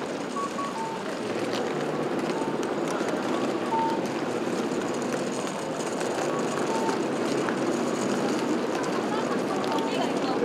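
Busy city street: many pedestrians chattering and walking, with traffic in the background. A short two-note falling electronic chime, the audible signal of a Japanese pedestrian crossing, repeats every few seconds.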